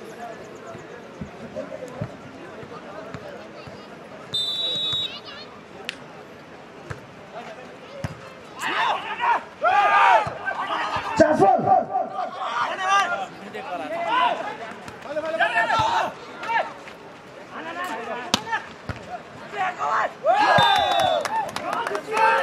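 Players and spectators shouting and cheering during an outdoor volleyball rally, with sharp slaps of hands hitting the ball. A referee's whistle blows briefly about four seconds in. The shouting grows loud from about eight seconds on.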